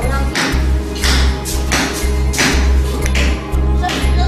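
Background music with a steady low pulse, over repeated knocks of a mallet driving wooden wedges into the seam between a wooden coffin's body and its base.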